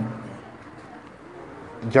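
A pause in a man's amplified speech, filled by quiet background noise with a faint, short low call that rises and falls about halfway through, like a bird's. The speech trails off at the start and resumes just before the end.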